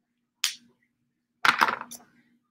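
Two short bursts of scratching and clicking from hands working with pen and paper at a desk close to the microphone: a brief one about half a second in, and a longer one made of several quick clicks near the end.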